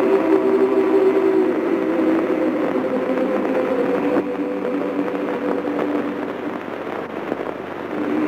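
Orchestral film score holding sustained chords, from an old, worn recording with steady crackle running under the music.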